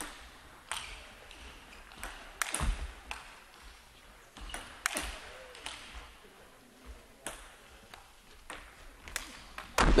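Table tennis ball going back and forth in a long lobbing rally: sharp ticks of racket hits and table bounces at uneven intervals, some a second or more apart as the ball is lobbed high.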